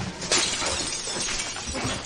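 Glass shattering in a sudden loud crash about a third of a second in, with the noise of breaking pieces trailing off over the next second and a half.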